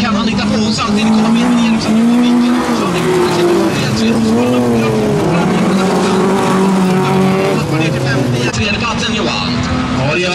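Several bilcross race cars' engines revving hard on a dirt track, more than one at once, their notes rising and falling and stepping as the cars accelerate and lift.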